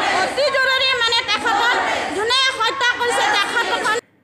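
A crowd of women shouting protest slogans together, many raised voices overlapping, cutting off suddenly at the end.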